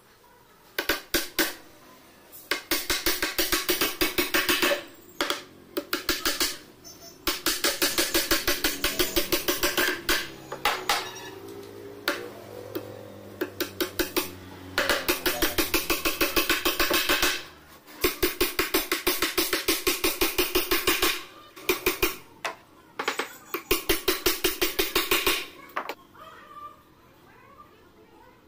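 Hammer nailing plywood cabinet panels together: runs of rapid, even blows, several a second, with short pauses between the runs.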